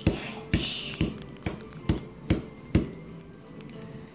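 A small clear plastic container of chunky glitter tapped in a steady rhythm: seven sharp taps, about two a second, which stop near three seconds in.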